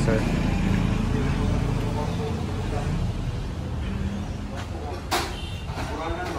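Low, steady motor-vehicle engine and traffic rumble that slowly fades, with one sharp click about five seconds in.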